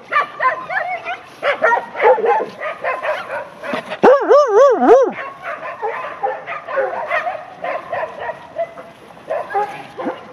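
Dogs calling out during rough play: a string of short, high calls, then a loud wavering call that rises and falls several times for about a second, about four seconds in.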